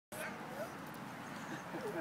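A dog whining, a couple of short rising whines, over steady outdoor background hiss, with a person's laughter starting near the end.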